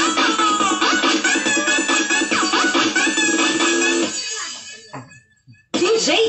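Upbeat dance music with a fast, even pulse. It fades away about four seconds in, goes nearly silent for a moment, then starts up again loudly just before the end.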